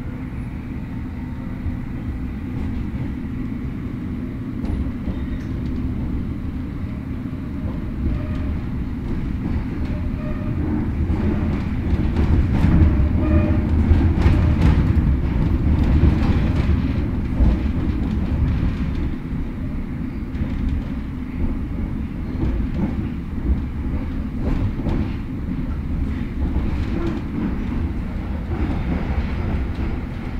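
London Underground S8 stock train heard from inside the carriage, pulling away and running into the tunnel. A steady low rumble of wheels and running gear grows louder about ten seconds in and peaks around the middle, with scattered clicks of the wheels over rail joints.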